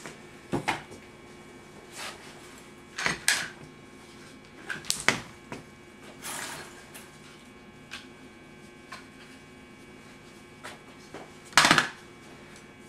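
Scattered handling noises: light knocks, clicks and rustles as tangled upholstery trim cord is sorted out at a workbench, with one louder knock near the end.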